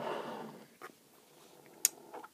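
Faint handling of small metal dripper parts: a soft rustle that fades in the first half second, a light click about a second in, and a short sharp click near the end.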